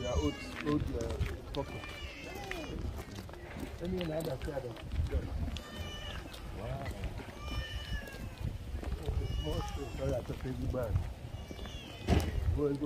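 Voices talking in the background, with short high falling animal calls repeating every second or two.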